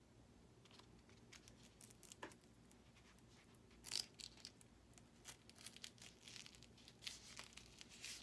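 Faint rustling and crackling of a foam bracer being closed on the forearm with hook-and-loop (Velcro) tape, with a short, louder scratchy burst about four seconds in as the strip is pressed shut.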